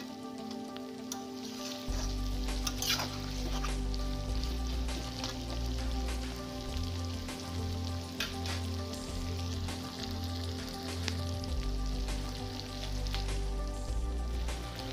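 Goat meat frying and sizzling in a pan with garlic and onion, stirred now and then with a spatula. From about two seconds in there is background music with a steady bass underneath.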